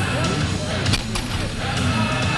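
Loaded barbell set down on the lifting platform after a deadlift, a clatter of plates about a second in, over loud background music and voices.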